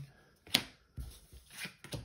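Card-stock cards handled and set down on a table: a sharp tap about half a second in, then a few soft slides and rustles.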